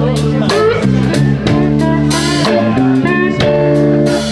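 Blues band playing live: electric guitars over bass guitar and drum kit, with bending lead-guitar lines.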